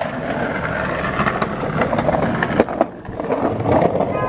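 Skateboard wheels rolling on a concrete sidewalk: a steady rumble broken by sharp clacks as the wheels cross the joints between slabs. The rumble drops away briefly about three seconds in.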